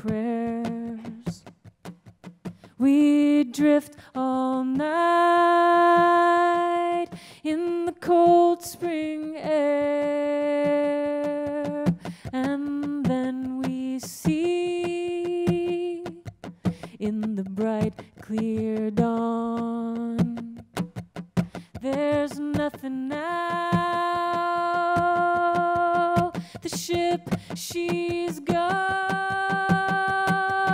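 A woman singing a slow melody live in long held notes with short breaths between phrases, with little accompaniment beyond sparse percussive ticks.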